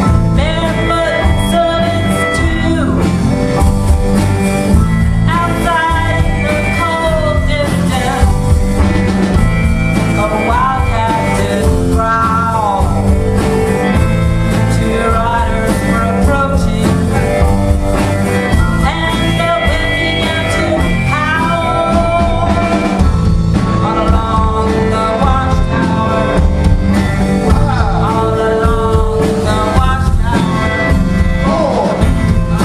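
A blues band playing live. A harmonica cupped to a vocal microphone leads with bending, sliding notes over electric guitar and drums.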